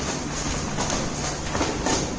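A large printed plastic bag rustling and crinkling as it is shaken out and folded by hand, with sharper crackles near the end.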